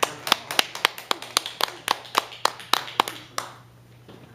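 Hand clapping in applause: single, evenly spaced claps at about four a second, fading out after about three and a half seconds.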